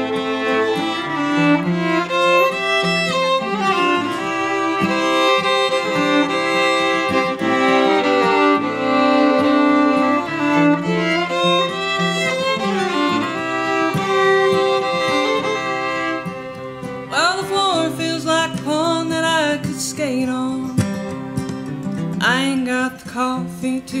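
Twin fiddles playing an instrumental introduction in harmony over acoustic guitar, with long held notes giving way to sliding, ornamented fiddle lines in the last few seconds.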